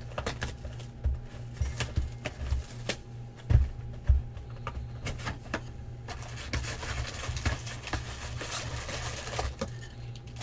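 A cardboard trading-card box, a 2016 Bowman Draft Jumbo box, being handled and opened by hand. Scattered taps and knocks come first, with two louder thumps about three and a half and four seconds in. Then the cardboard flaps are pulled open with rustling and scraping through the second half.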